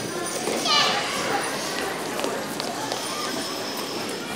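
Indistinct hubbub of children's and audience voices in a school gymnasium, with a high child's voice rising above it about a second in.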